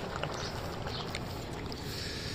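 A pot of khichdi bubbling as it cooks on an induction cooktop: a steady simmering hiss with many small pops.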